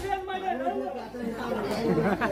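Speech only: voices talking through a stage microphone and PA.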